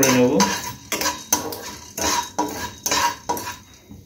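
A spatula scraping and stirring whole cloves and black peppercorns around a dry non-stick kadai: the spices are being dry-roasted without oil. The strokes come about two to three a second and stop near the end.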